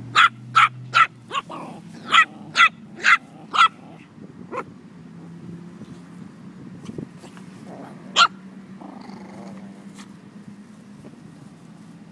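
Small dogs at play: one barks in a quick run of about nine high yaps over the first four or five seconds, then once more about eight seconds in.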